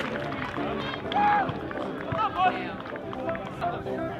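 Shouted calls from people at a football pitch: a short shout about a second in and a couple more around the middle, over open-air field ambience, with no clear words.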